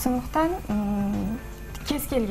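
A woman's voice speaking haltingly, with a long level-pitched hesitation sound held for about half a second in the middle.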